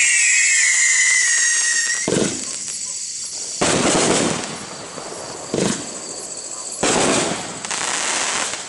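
Shogun 'Thriller' 200-shot, 500-gram firework cake. A whistle falls in pitch and cuts off about two seconds in. Then about five separate bursts follow, a second or two apart, each with a short spell of crackle.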